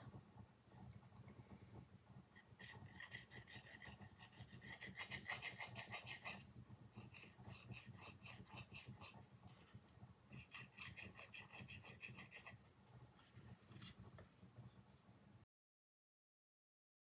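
Small flat wooden stick rubbing quickly back and forth against the edge of a wooden ornament as it works on metallic gold paint: faint, fast scraping strokes in two longer runs with softer rubbing between. The sound cuts off suddenly near the end.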